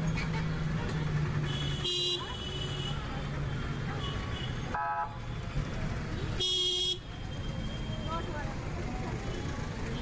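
Busy street traffic with engines running and three short vehicle horn toots: one about two seconds in, a different-pitched one about five seconds in, and a longer one at about six and a half seconds.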